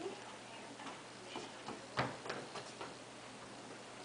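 A few light taps and clicks in a quiet room, the sharpest about two seconds in.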